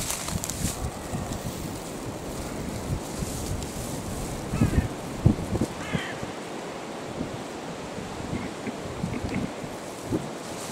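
Wind buffeting the microphone in gusts, loudest about halfway through, with a few short bird calls in the middle.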